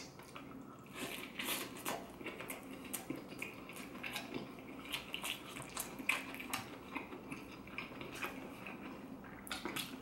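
A mouthful of crispy battered lemon chicken being chewed and crunched, with irregular crackles and small clicks throughout.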